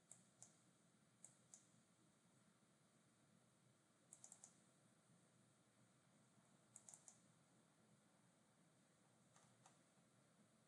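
Faint computer mouse clicks over near-silent room tone: two pairs of clicks, then two quick runs of about four clicks each, and a few softer clicks near the end.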